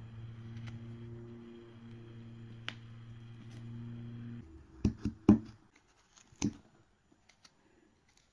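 Three sharp clicks of a carving blade cutting into a small wooden figure, coming about five to six and a half seconds in. Before them a steady low hum runs and stops abruptly.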